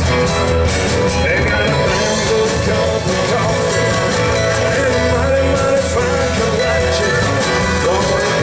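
Live honky-tonk country band playing at full volume through a PA: electric guitars, pedal steel, bass and drums with a steady beat, and no sung words.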